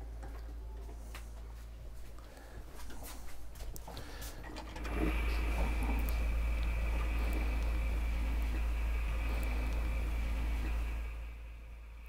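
Air rushing into an open RV bathroom faucet as the water lines drain out the open low-point drains: a steady hiss that starts about five seconds in and stops near the end. Before it, a few clicks and handling knocks.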